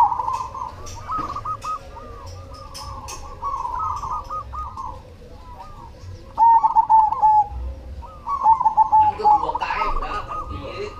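Zebra dove (perkutut) cooing: runs of rapid, bubbling trilled coo notes with short pauses between them, the loudest run a little past halfway.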